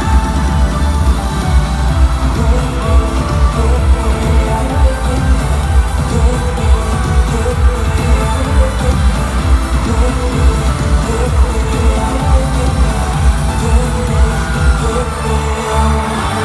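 K-pop song with singing playing loud over an arena sound system, carried by a steady heavy bass beat, as heard from among the crowd.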